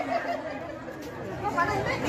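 Background chatter: several women talking over one another at a lower level, with a voice rising near the end.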